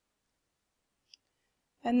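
A single faint computer mouse click about a second in, against otherwise dead silence.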